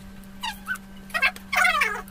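A pet whimpering: three high cries that fall in pitch, the last one longer and louder, in the second half.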